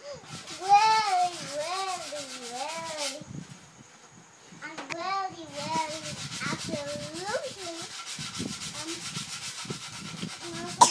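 A young girl's high voice in wordless, sing-song vocal sounds with smooth rising and falling pitch, twice with a short lull between. Over it, and filling the second half, a steady rubbing and rustling noise.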